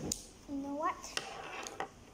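Sharp plastic clicks of a felt-tip marker's cap being handled and snapped on, one at the start and a few more in the second half, with a child's short rising hum in between.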